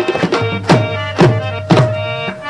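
Harmonium holding a steady chord under tabla strokes that land about every half second, as the instrumental opening of a Pashto folk song.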